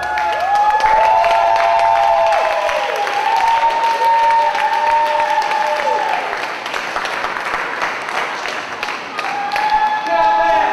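Audience applauding, with long drawn-out cheering voices over the clapping for the first few seconds.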